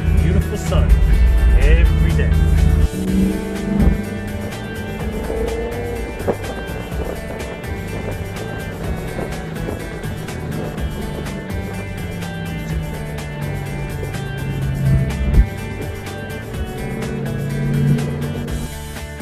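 Music plays throughout over the Shelby GT500's supercharged V8. The engine is loud and low for about the first three seconds, then falls back to a quieter steady drone under the music.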